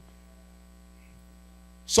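Faint, steady electrical mains hum, a low buzz with a ladder of higher overtones. A man's voice cuts in near the end.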